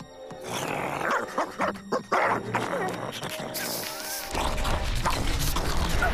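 Cartoon soundtrack: background music under a raccoon character's wild, shrieking vocalising, then a deep low rumble from about four seconds in.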